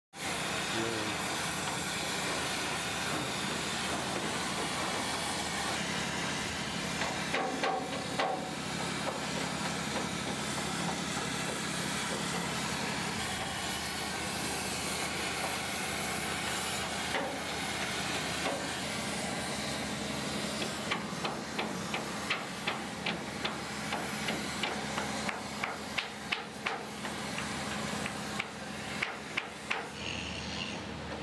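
Shipyard repair work: a steady hiss over a low machine hum, and from about two-thirds of the way in a run of sharp, irregular knocks, about two a second, typical of hammer blows on a steel hull.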